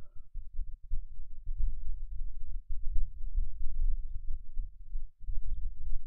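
Uneven low rumbling noise with no speech, flickering in level and briefly dropping out about five seconds in.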